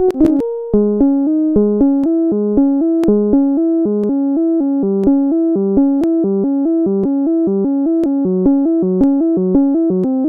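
Software modular synthesizer in VCV Rack, a sawtooth oscillator through a low-pass filter and an envelope-triggered amplifier, played from a MIDI keyboard. It sounds a quick, mellow line of notes, about three or four a second, moving up and down, each note starting with a slight click.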